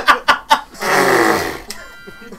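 A loud hiss of escaping steam with a low rasp under it that falls in pitch, lasting under a second and sounding like a fart; brief laughter comes just before it.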